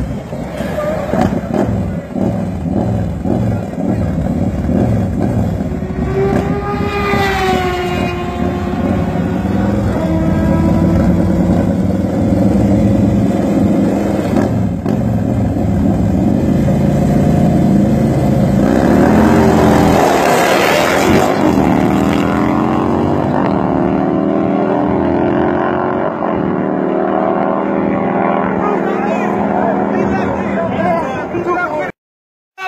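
Two Harley-Davidson V-twin baggers running loudly at the start line with some revving, then launching hard about twenty seconds in, their engine pitch climbing as they accelerate away in a drag race.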